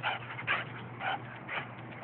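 Dogs calling out to each other across a fence: four short, high-pitched calls about half a second apart.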